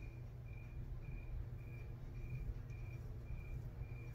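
A cricket chirping in the background: short chirps at one high pitch, evenly spaced at about two a second, over a faint low hum.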